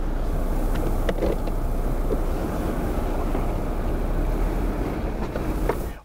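Daewoo Musso four-by-four running, a steady engine and road rumble with no clear change in pitch.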